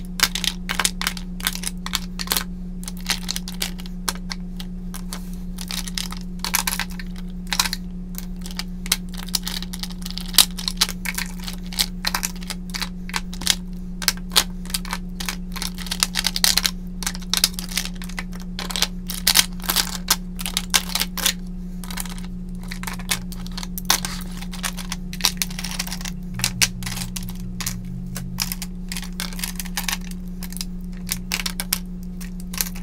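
Plastic lip gloss tubes clicking and clattering against each other and the wooden tray as they are picked up and set down, in irregular clicks throughout. A steady low hum runs underneath.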